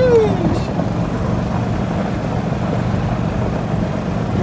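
A gas-engine Club Car golf cart's engine running steadily as the cart drives along.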